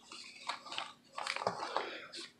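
Paper pages and fabric trim of a handmade junk journal rustling as the book is handled and its pages turned, in soft scratchy bursts with a few small clicks.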